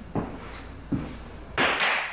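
Two sharp knocks or thuds about three-quarters of a second apart, then a brief, louder hissing rustle near the end; of unclear cause, with the walker wondering whether she bumped something.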